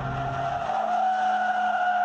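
Toyota GT86's tyres squealing as the rear-drive car slides sideways in a drift: one long, steady, high-pitched squeal that swells slightly and holds. Under it the car's two-litre boxer four-cylinder engine runs, its low note dropping away about two-thirds of a second in.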